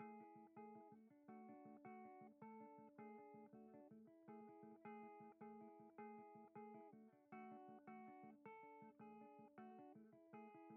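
Hollow-body electric guitar playing a repeating picked arpeggio, notes struck about twice a second and left to ring, with no singing over it.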